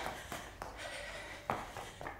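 Soft taps of trainers shuffling on an exercise mat over a wooden floor, with hands touching down, a few light knocks and one sharper knock about one and a half seconds in, under faint room noise.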